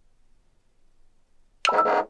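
Near silence, then about a second and a half in, a short pitched chime lasting under half a second: an Android phone's notification sound announcing an incoming Discord message.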